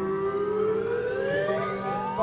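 Live band music: one long note glides slowly and smoothly upward in pitch over a steady low drone.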